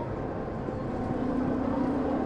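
Outdoor amusement park ambience: a steady low mechanical hum, strongest in the second half, over a continuous background of crowd and park noise.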